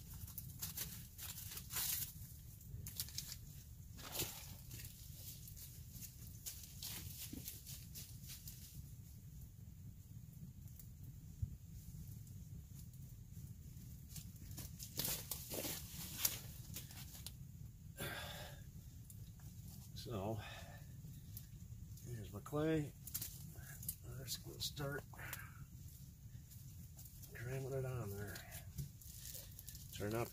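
Wood campfire crackling, with many scattered sharp pops and snaps. A few short murmurs of a man's voice come in during the last third.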